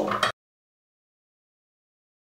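The last syllable of a woman's speech, cut off abruptly about a third of a second in, then complete digital silence.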